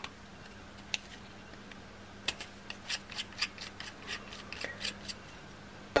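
Faint clicks and scrapes of small stainless-steel atomizer parts being handled and screwed back together by hand. There is a single click about a second in, then a quick run of ticks in the middle.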